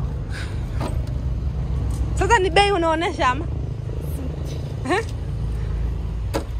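A person's voice for about a second, starting two seconds in, then a short rising vocal sound near five seconds, over a steady low rumble, with a few faint clicks.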